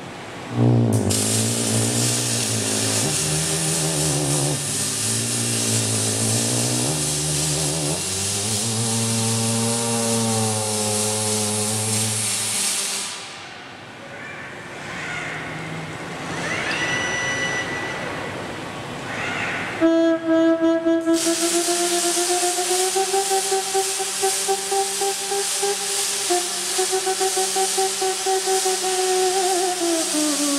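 A theremin plays wavering, vibrato-laden notes over the loud hiss of robotic arc welding. The welding hiss cuts off about halfway through, leaving a quieter passage. It starts again near the end, now with a fluttering crackle, as a held theremin tone slides slowly upward.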